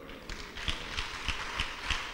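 Faint, even hand clapping from a congregation, about three claps a second, over room noise.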